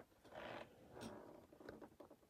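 Faint handling sounds at a fly-tying vise: three soft, short scrapes or rustles as CDC feather fibres are trimmed and handled with the fingers.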